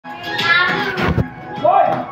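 Schoolchildren's voices calling out together, with music coming in near the end.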